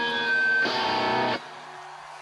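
Live rock band, led by electric guitar, playing its last notes: a chord is strummed about half a second in and rings briefly, then the sound cuts off sharply after about a second and a half, leaving only a faint low hum.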